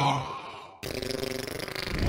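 Cartoon sound effects: a low, grunt-like vocal sound fading away, then a sudden noisy effect with a low rumble starting just under a second in.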